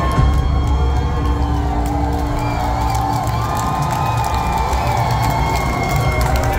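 Loud concert music through a hall's PA, long held tones over a heavy low end, with the crowd cheering and whooping over it.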